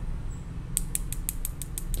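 Metal RCA plug bodies clicking lightly against each other as they are handled, a quick run of about ten small clicks about eight a second, starting just under a second in.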